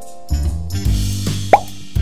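Background guitar music with a single loud plop, a quick rising pitch, about one and a half seconds in.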